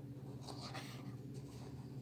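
Faint rustle of glossy comic-book pages under the hands holding the book open, swelling twice, over a low steady hum.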